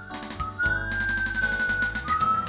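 A person whistling the lead melody in imitation of electric guitar bends. There is a short note, then a long held note from about half a second in that slides up a little and eases back down. Under it runs an instrumental backing track with drums ticking steadily.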